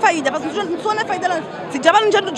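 A woman talking, with the chatter of people around her.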